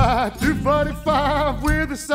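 A male voice singing over fingerpicked acoustic guitar, with bass notes from an octave pedal. The voice wavers on a held note at the start, then sings short phrases.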